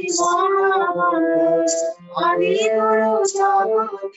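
A woman singing a devotional song in long, held melodic phrases, with a short break for breath about halfway through.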